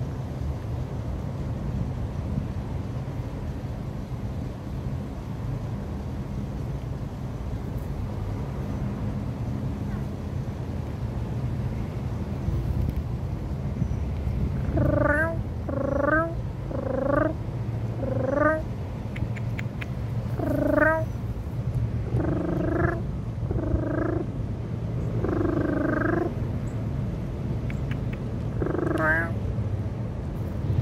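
Cat meowing: about ten short meows roughly a second apart through the second half, the later ones a little longer, over a steady low rumble.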